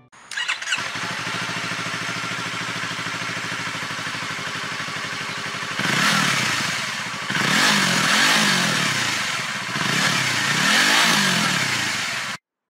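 Yamaha YZF-R3's parallel-twin engine starting up about half a second in and idling steadily, then revved repeatedly from about six seconds in, its pitch rising and falling with each blip of the throttle.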